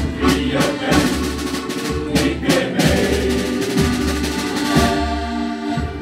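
Live instrumental music with a steady drum beat: the instrumental interlude between sung verses of a shanty-choir song.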